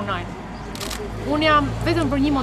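A woman talking in Albanian in short phrases, over a steady low background hum.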